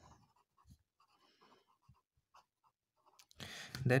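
Felt-tip pen writing on paper: faint, short pen strokes for about three seconds, then the pen stops.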